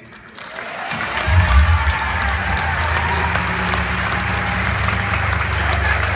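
Audience applauding, starting about half a second in and settling into steady clapping.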